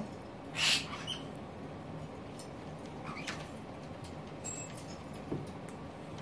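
A caique making short calls over quiet room noise: a brief harsh burst about half a second in, then a quick falling chirp about three seconds in.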